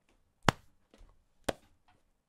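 Two sharp hand smacks about a second apart, beating out a steady rhythm.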